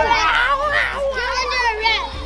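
Several children's voices talking and calling out over one another, high-pitched and excited, with no clear words.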